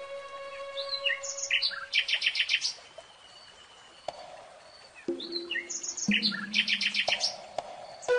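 Bird chirping in two matching phrases, each a few quick high chirps ending in a rapid run of about six notes, with a quiet gap between. Soft low sustained tones sound underneath in the second half.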